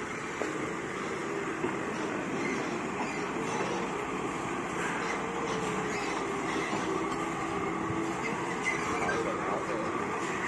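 TCM forklift's engine running steadily as the forklift carries a large log across the yard, a continuous mechanical drone with a faint hum that drifts slightly in pitch.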